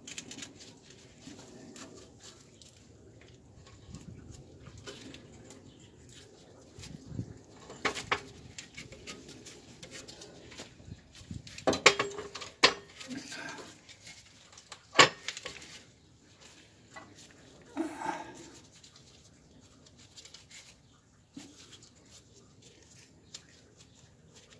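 Scattered metal clinks and knocks as a rusted rear knuckle, hub and brake rotor assembly is worked loose by hand, with the sharpest knocks about eight, twelve and fifteen seconds in and quieter handling noise between.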